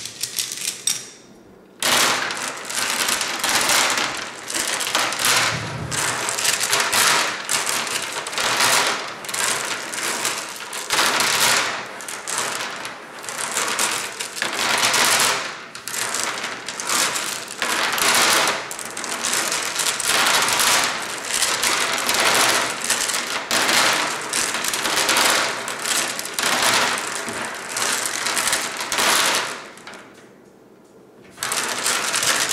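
Flat glass decorative gems rubbed and shuffled together by hand on a wooden tabletop: a dense clinking clatter that swells and eases in waves about once a second, starting about two seconds in after a brief pause.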